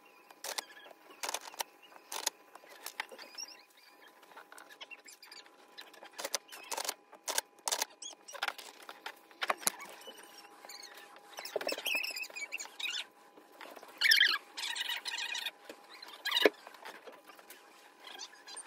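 Rustling and crinkling of sublimation transfer paper and blanket fabric being handled and smoothed, with scattered sharp taps and clicks, over a faint steady hum. A short high-pitched sound comes about fourteen seconds in.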